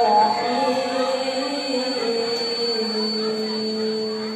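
A girl reciting the Qur'an in melodic tilawah style into a microphone, drawing out long held notes. The pitch steps lower about halfway through.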